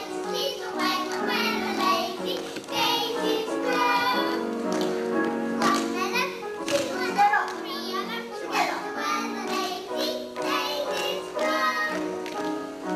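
A song with a singing voice over an instrumental backing track, playing continuously with held chords and a moving vocal line.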